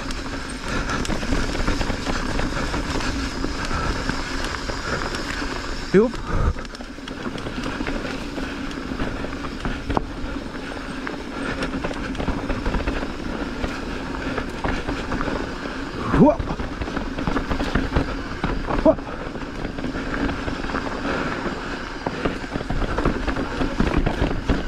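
Mountain bike rolling fast down a dirt singletrack: steady wind rush on the microphone mixed with tyre noise on dirt and the rattle of the bike, broken by a few sharp knocks over bumps.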